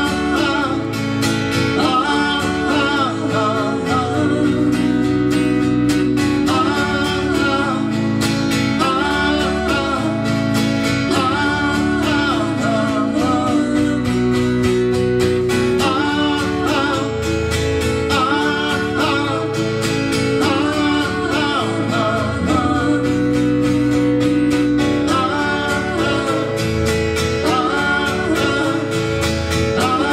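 Live song: a man singing in short repeated phrases over a strummed acoustic guitar and sustained keyboard chords.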